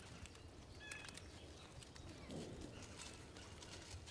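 Faint clicking and rustling of a steel wire snare cable being twisted and looped by hand, over a quiet outdoor background, with a brief faint chirp about a second in.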